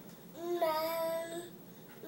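A toddler's voice singing one long held 'aah' note with a sudden jump in pitch just after it starts.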